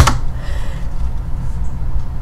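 A single sharp click of a computer key or mouse button right at the start, then a steady low hum of background noise.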